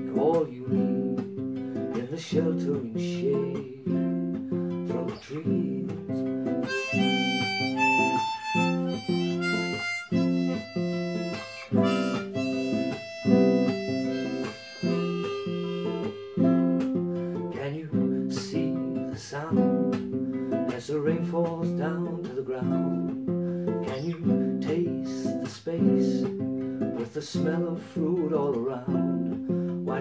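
Nylon-string classical guitar strummed in a steady rhythm, with a harmonica in a neck rack playing a melody over it; the harmonica is loudest and highest from about seven to sixteen seconds in.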